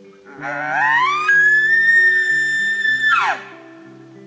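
Elk bugle call blown through a hunter's bugle tube: one loud whistle that climbs steeply, holds a high note for about two seconds, then drops off sharply near the end, imitating a bull elk's bugle. Soft guitar music runs underneath.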